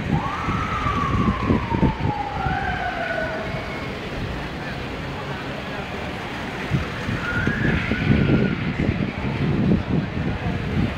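Siren of a motorcade escort vehicle: one falling wail lasting about three seconds near the start, then short siren chirps later on. Passing SUVs and crowd voices lie underneath.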